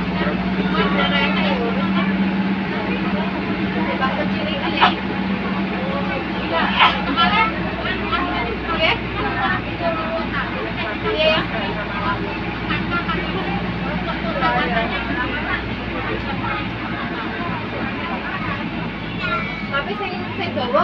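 Passengers' voices chattering inside a moving bus over the steady low drone of its engine and road noise.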